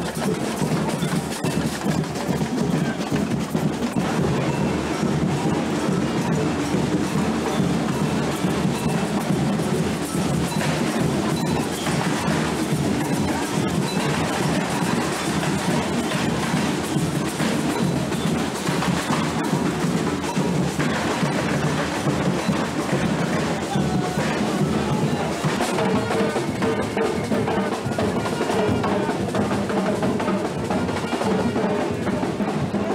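A street carnival band's drums and percussion playing a steady, driving rhythm. Steady pitched notes, in keeping with the band's trombones, come in near the end.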